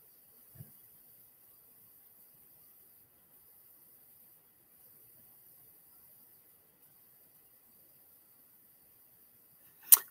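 Near silence, with a faint short low thump about half a second in and a sharp click near the end.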